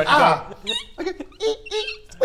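Men's voices: a loud vocal sound at the start, then short, broken vocal noises.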